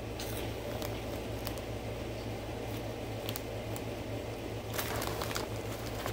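Mouth-close chewing of a crunchy corn-and-potato hot fry snack stick: scattered crisp crunches, bunched together about five seconds in, over a steady low hum.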